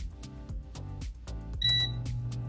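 A Chefman digital air fryer's touch panel gives one short beep near the end as a button is pressed, and a steady low hum begins at the same moment as the fan starts running. Background music plays throughout.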